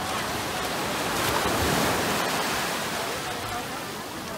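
Small waves washing up over the shallows in a rush of surf that swells about a second in and eases off near the end.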